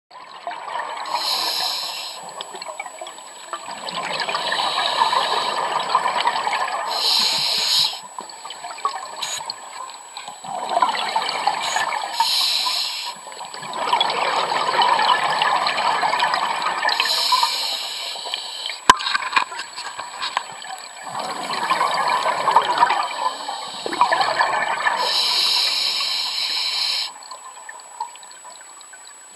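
Scuba diver breathing through a regulator underwater: a short hiss on each inhale alternates with a longer burble of exhaled bubbles, about five breaths at roughly one every five seconds. A single sharp click comes about two-thirds of the way in.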